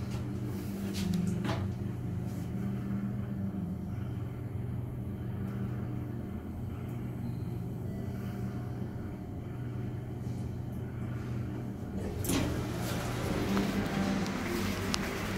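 Sigma elevator car travelling, heard from inside the cabin as a steady low hum and rumble. About 12 seconds in, a louder rush of noise begins as the car arrives and its doors open.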